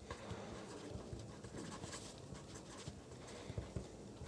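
Pen writing on paper: faint, irregular scratching and light tapping strokes of handwriting.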